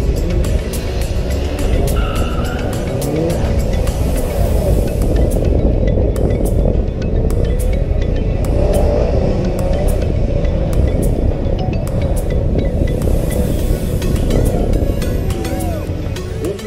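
Background music with a steady beat, mixed over a gymkhana car's engine revving up and down repeatedly as it is driven around the track.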